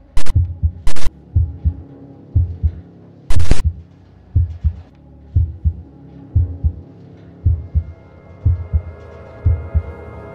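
Film-score sound design: a heartbeat effect, low double thumps about once a second, over a steady droning pad. Sharp bursts of harsh static-like noise, the loudest sounds, cut in near the start and again for a moment at about three and a half seconds.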